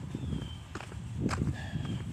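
Footsteps of a person walking outdoors, with rumble and knocks from the handheld tablet's microphone. A short, high falling whistle repeats about every second and a half.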